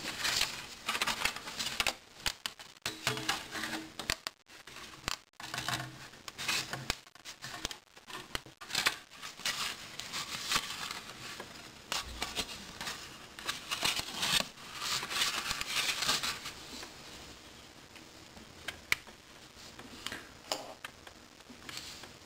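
Hobby knife sawing and scraping through thin vacuum-formed plastic, with the sheet crinkling and clicking as it is worked and handled. The scraping is busy for most of the time, then drops to a few sharp ticks over the last few seconds.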